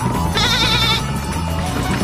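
A cartoon sheep's short, wavering bleat, about half a second long, over background music.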